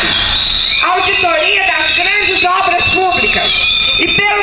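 A voice amplified through a loudspeaker, harsh and distorted, going on without pause, with a rough noisy burst in the first second.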